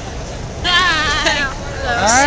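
A person's voice letting out a short wordless call with a fast-wavering, wobbling pitch, starting about half a second in and lasting under a second. It sits over the steady background noise of a large crowded hall.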